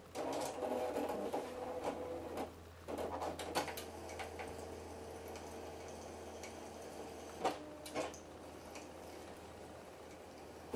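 Apple StyleWriter inkjet printer's mechanism running, a motor whirring in several short runs and then more steadily, with two sharp clicks near the end.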